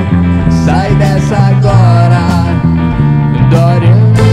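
Instrumental break of a rock song: drums and bass guitar under a lead melody that bends and slides in pitch, with guitars filling out the band sound.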